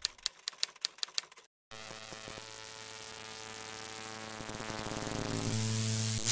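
Typewriter-key sound effect clicking in a quick, even run for about the first second and a half, as in a logo animation. After a brief break, a sustained hissing drone with steady low tones swells gradually louder toward the end: a riser in the outro sting.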